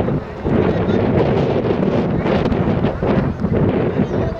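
Wind buffeting the microphone over a crowd of spectators chattering and calling out as a penalty kick is about to be taken.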